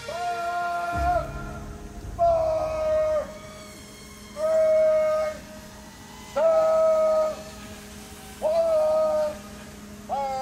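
Blast warning horn sounding five steady, one-second blasts about two seconds apart: the warning signal that a demolition charge is about to be fired.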